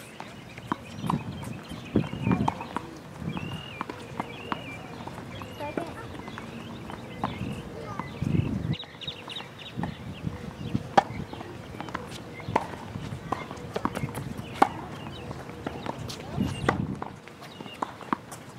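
Tennis ball being struck by rackets and bouncing on a hard court during a rally: a run of sharp pops every second or so, with murmuring voices in the background.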